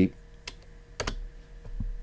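Computer keyboard keys pressed a few times: two sharp clicks about half a second apart, then a couple of fainter taps, over a faint steady hum.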